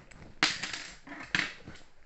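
Plastic Lego bricks clattering in a box as hands rummage through them: two loud rattling bursts about a second apart, with smaller clicks between.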